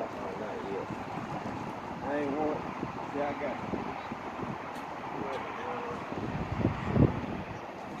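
Outdoor background noise with wind on the microphone and faint voices now and then. A louder low gust of wind comes about seven seconds in.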